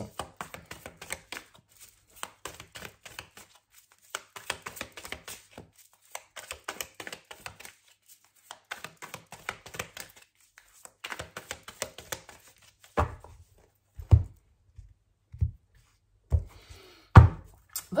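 A deck of tarot cards being shuffled by hand: quick runs of papery flicks and clicks in bursts. In the last five seconds come several separate thumps of the cards against the table.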